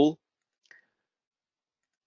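A single faint computer mouse click about two-thirds of a second in, launching a poll; otherwise near silence.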